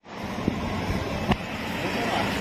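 Noisy outdoor street background with a couple of sharp snaps as a large flex banner is ripped down by hand.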